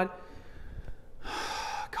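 A man's sharp intake of breath through the mouth, a little over a second in, after a short pause. Speech picks up again right at the end.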